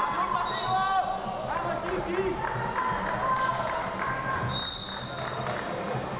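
Voices shouting in a large hall, with two short, high whistle blasts from the wrestling referee: a fainter one about half a second in and a louder one about four and a half seconds in.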